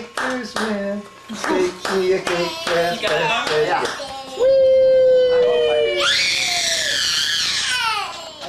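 Young children's voices: quick chattering for the first few seconds, then a long, steady, held vocal note, then a loud high shriek that falls in pitch toward the end.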